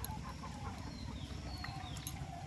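Chickens clucking faintly in short, scattered calls over a steady low rumble.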